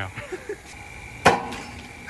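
Three-wheel baseball pitching machine set to full power on all three wheels firing a fastball of about 106 mph: one sharp crack about a second and a quarter in, with a short ringing after.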